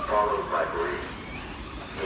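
Nitro engines of 1/8-scale RC off-road buggies buzzing around the track, their high whine rising and falling as the throttle opens and closes.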